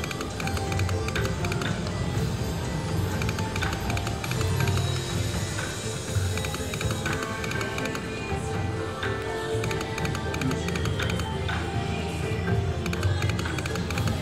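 River Dragons Sapphire video slot machine playing its game music and reel sound effects, with short ticks as the reels spin and stop, over several losing $30 spins in a row.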